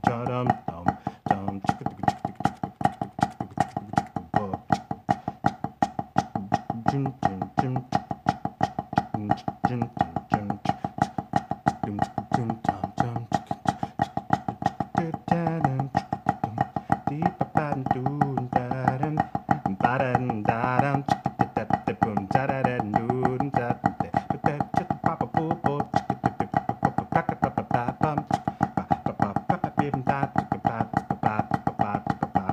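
Wooden drumsticks striking a rubber practice pad in a fast, steady stream of crisp taps, played along with backing music that has a moving bass line.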